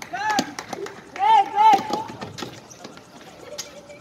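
Basketball players running on an outdoor hard court: quick footsteps and knocks, with short high-pitched sneaker squeaks, one near the start and three in a row about a second in.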